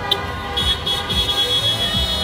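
Several car horns honking together in long, overlapping steady tones at different pitches, over the low rumble of slow-moving cars.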